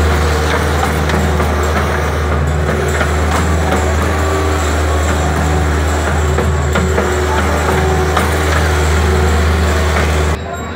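Bobcat S450 skid-steer loader's diesel engine running steadily as the machine drives and scrapes dirt, a loud, deep, continuous drone.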